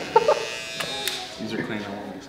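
Cordless hair clipper switched on and buzzing steadily for about a second, then stopping.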